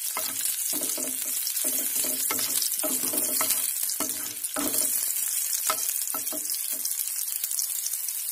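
Crushed garlic and fenugreek seeds sizzling in hot oil in a nonstick pan, stirred with a wooden spatula that clicks and scrapes against the pan again and again.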